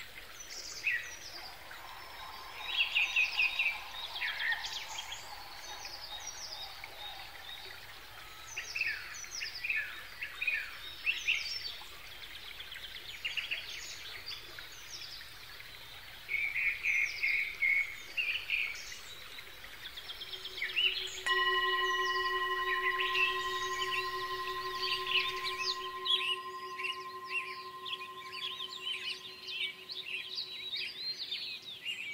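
Many small birds chirping and trilling. About two-thirds of the way through, a Tibetan singing bowl is struck and rings on with a steady, slowly fading tone made of several pitches.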